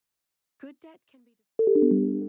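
Google Play Books audio-logo chime: about one and a half seconds in, a quick falling run of electronic notes comes in one after another and builds into a held chord.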